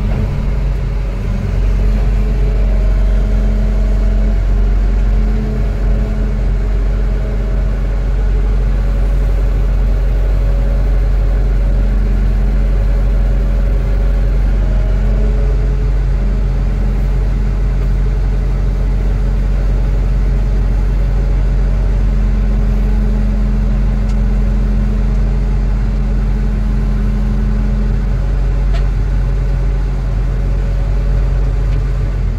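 Excavator diesel engine running, heard from inside the operator's cab: a loud, steady low drone whose pitch wavers slightly now and then as the arm and bucket are worked. A faint tick near the end.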